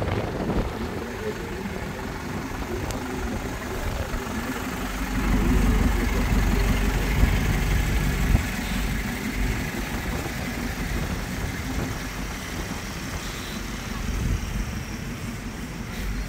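Low, steady rumble of car and van engines idling on a ferry's vehicle deck. It grows louder for a few seconds about five seconds in.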